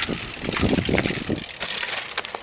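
Mountain bike passing close by on a dirt track, its tyres crunching over loose dirt and rock, with wind rumbling on the microphone.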